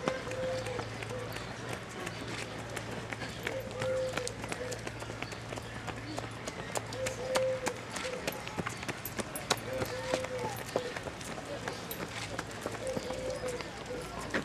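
Footsteps of runners on wet paving, many quick light strikes as a stream of joggers passes. A short steady tone sounds about every three seconds, five times in all.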